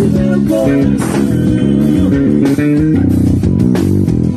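Electric bass guitar played fingerstyle, a melodic forró groove in the low register, with a quick run of rapidly repeated notes about three seconds in.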